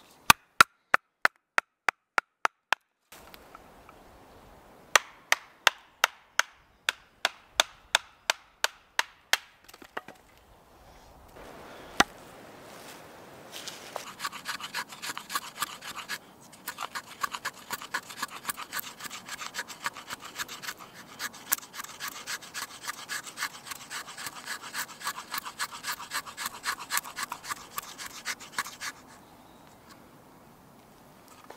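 A knife being batoned down through a thin stick with a wooden baton: a run of about ten sharp wooden knocks, a short pause, then a second run. From about halfway in, fast repeated scraping strokes of the knife blade shaving thin curls off a resinous fatwood stick to make a feather stick.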